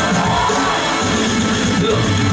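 Hip-hop music playing loud through a hall's sound system: an instrumental stretch of the track with a steady beat and no rapping.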